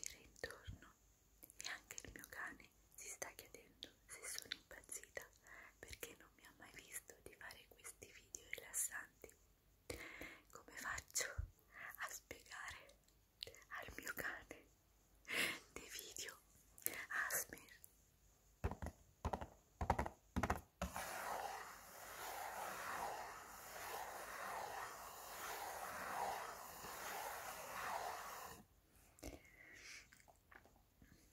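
A woman whispering in Italian close to the microphone, broken by short clicks. For several seconds near the end there is a dense, steady rustling noise.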